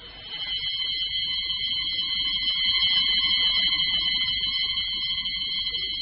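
A steady high-pitched ringing tone, held at one pitch without wavering, over a faint low crackle.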